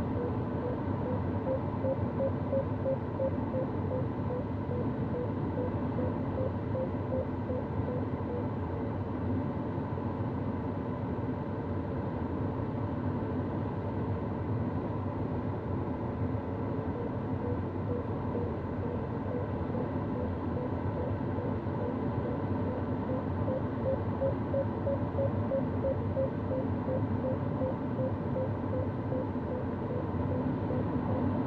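Steady rush of airflow inside an Antares sailplane's cockpit in gliding flight. Over it an electronic variometer beeps in quick, even pulses whose pitch rises a little near the end; the pulses fade out for a stretch midway. The beeping is the variometer signalling that the glider is climbing in rising air.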